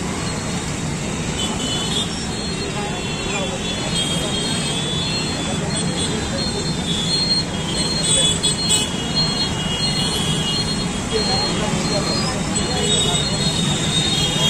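Busy street traffic, with scooters and motorcycles running past and a crowd talking all around; a steady din that grows a little louder from the middle on.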